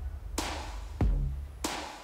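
Electronic background music with a drum-machine beat: a sharp hit, a deep bass drum thump about a second in, then another sharp hit.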